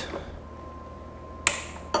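A sharp snip about one and a half seconds in, then a smaller click near the end: side cutters snipping through zip ties on the motorcycle's wiring harness.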